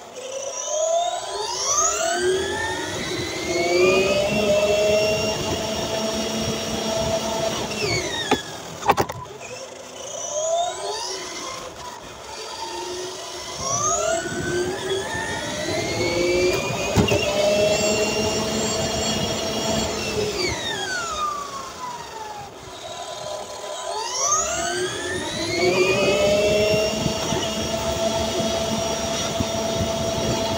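Electric motor and gear drivetrain of a Kyosho Fazer Mk2 RC car, heard from a camera riding on the car: a whine that rises in pitch as the car accelerates, holds, then falls as it slows, three times, over tyre noise on asphalt. A couple of sharp knocks about nine seconds in.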